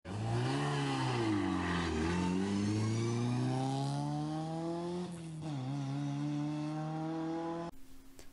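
BMW E36 rally car engine revving and accelerating. The pitch swells and dips over the first two seconds, then climbs steadily, drops sharply about five seconds in as if on a gear change, and climbs again until the sound cuts off just before the end.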